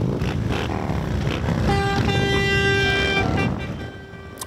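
A group of motorcycles riding slowly past with their engines running. A horn sounds one steady note for about a second and a half in the middle.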